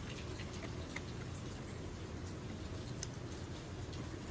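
Quiet, steady patter of light rain, with a faint click about a second in and a sharper one near three seconds from handling an M1911 pistol frame and its grip panels.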